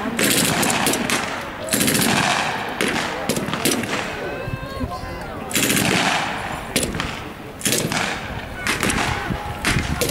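Small-arms fire in bursts of automatic fire and single shots, with a quieter lull about halfway through.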